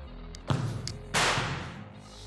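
Background music, with a sharp thump about half a second in and a louder, short burst of rushing noise just after a second in, from a football being struck hard at the goal.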